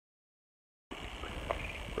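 Dead silence for about the first second, then steady outdoor background noise with a low rumble and one short click about a second and a half in.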